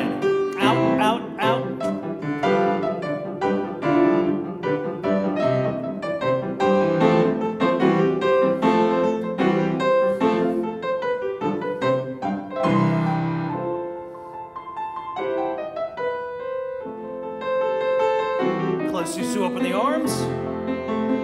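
Live grand piano accompaniment for a ballet barre exercise: a brisk tune with sharp, evenly accented notes. About two-thirds of the way through it settles into slower, held notes.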